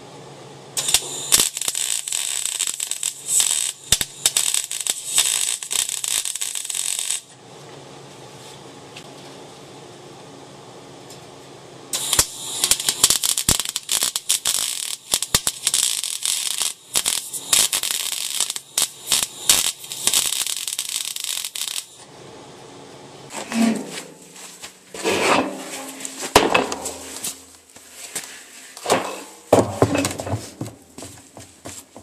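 Stick arc welding on steel: the arc crackles and sputters in two long runs of about six and ten seconds, with a steady low hum in the pause between them. Near the end, irregular knocks and scrapes of metal being handled.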